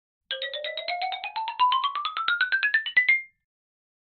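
Short intro jingle: a fast run of quick notes, about eight a second, climbing steadily in pitch for about three seconds, then stopping.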